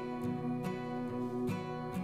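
Background music: plucked acoustic guitar chords in an even, unhurried pattern.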